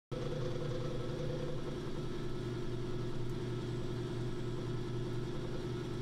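Steady low hum of an electric motor running, with a faint higher tone that drops out about a second and a half in.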